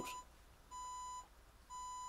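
Faint electronic beeps: a steady single-pitched tone about half a second long, repeating about once a second. One beep ends just after the start, and two more sound in the middle and near the end.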